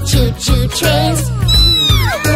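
Children's song: a high, pitch-gliding voice sings "choo choo trains" over a steady bass beat. Near the end a high, slightly falling whistle-like tone joins it.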